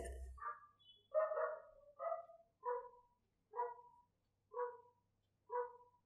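Faint animal calls from off-microphone: about seven short, pitched calls, roughly one a second.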